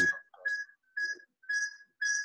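Choppy, broken-up audio from a participant's voice on a video call: four short clipped fragments with gaps of silence between them, each carrying a thin, steady whistle-like tone. This is the sign of a poor connection cutting up her speech.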